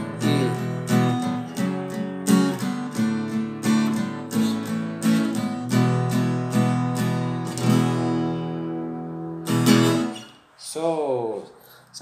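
Acoustic guitar strummed with quick downstrokes through the F-sharp minor, D, A and E chords, about three strums a second. About halfway through, one chord is left ringing for several seconds. A last strum comes near the end, followed by a brief voice sound.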